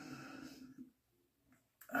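A man's faint, breathy exhale in a pause in his talk, fading out about a second in.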